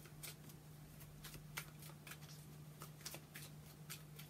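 Tarot deck shuffled overhand: faint, irregular flicks and taps of cards slipping from hand to hand, over a steady low hum.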